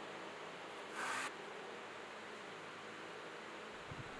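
Faint steady hiss of a quiet room, with one brief soft rustle about a second in from hands handling a leather-hard clay bowl.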